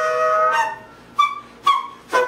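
Tenor saxophone holding a long note that breaks off about half a second in, followed by two short, sharp high notes about half a second apart.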